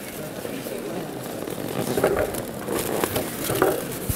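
Inflated balloons rubbing against each other and the container as they are forced into a crowded container of liquid nitrogen: an irregular, low-level rustle.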